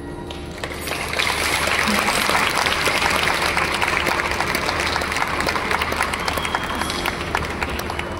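Audience applauding, starting about a second in as the last held notes of the music die away, then carrying on steadily.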